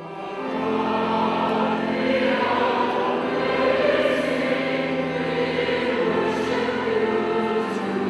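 Choral music: a choir singing sustained chords, swelling in over the first second and then holding steady.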